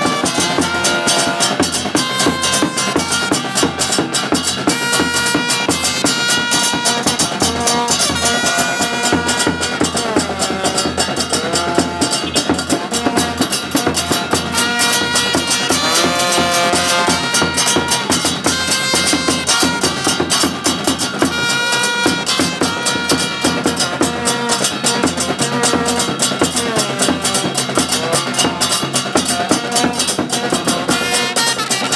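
Football supporters' band playing a tune on trumpets, the notes held and stepping up and down, over dense, steady drumming.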